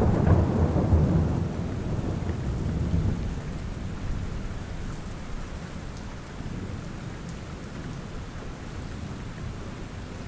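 Steady rain, with a low rumble of thunder through the first three seconds that fades away.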